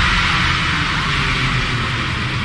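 Trailer sound design: a steady hiss-like rush over a low droning hum, easing off slightly toward the end.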